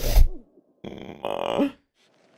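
Fight sound effects from a film's sword duel: a heavy blow at the very start, then a strained grunt lasting about a second, ending in a short rising cry.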